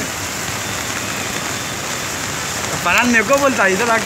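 Steady rain falling, an even hiss, with a voice talking over it near the end.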